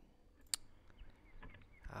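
A single sharp computer-mouse click about half a second in, followed by a few fainter clicks over low room noise.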